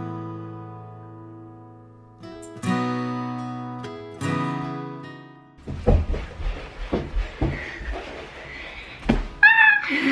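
Strummed acoustic-guitar background music, chords ringing out and fading, for about the first half. Then a run of soft thumps and rustling as someone crawls across a carpeted floor and grabs the camera, with a brief vocal sound near the end.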